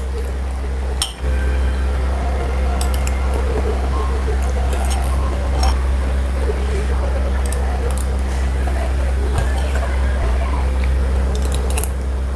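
Metal spoon clinking and scraping against a ceramic plate several times, with chewing between the clinks, over a loud, steady low hum.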